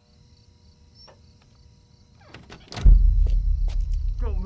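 Quiet room tone with a few faint clicks, then a short scuffling rush. About three seconds in, a loud low rumble starts suddenly and keeps going.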